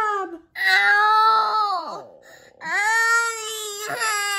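A young boy crying in two long, high wails, the first sliding down in pitch as it fades, just after his first baby tooth has been pulled.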